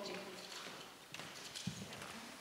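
Footsteps on a hard floor: a few irregular knocks of shoes as a person walks across the room.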